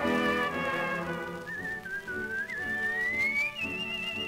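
An early-1930s dance orchestra recording: the band holds a full chord, then about a second and a half in a solo whistler takes over the refrain with a wavering note that glides steadily upward in pitch over light accompaniment.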